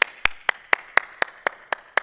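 One person clapping his hands in a steady rhythm, about four claps a second.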